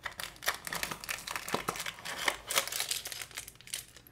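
Clear plastic accessory packet crinkling and crackling as it is handled and pulled out of a small cardboard box, an irregular run of sharp crackles.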